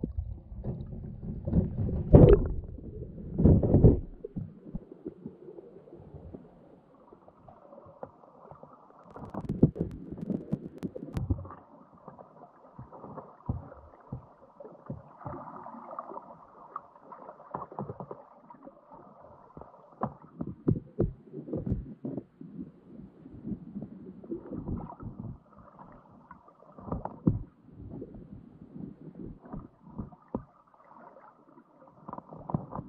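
Crab trap heard from a camera sealed inside it, underwater and muffled: heavy thuds and rushing water in the first few seconds as the trap is dropped in and sinks, then scattered soft knocks and bumps as it settles on the bottom.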